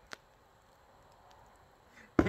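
Near silence, with one short, faint click just after the start.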